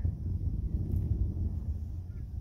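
Wind buffeting the microphone outdoors: an uneven low rumble.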